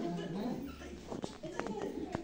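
A baby whimpering and fussing softly in short bursts, with a few small sharp clicks in the second half.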